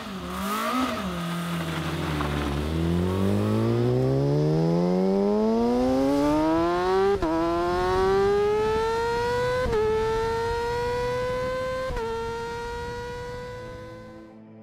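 Formula SAE race car's engine blipped twice, then revving up steadily under hard acceleration and shifting up three times. The pitch drops at each shift before climbing again, and the sound fades toward the end.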